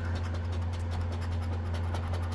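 A round coin-style scratcher rapidly scraping the coating off a paper scratch-off lottery ticket in many quick strokes, over a steady low hum.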